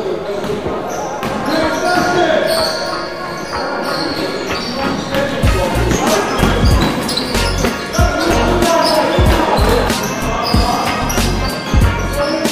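Basketball being dribbled on a wooden gym floor during play, with players' voices calling out. About halfway through, music with a heavy, regular bass beat comes in.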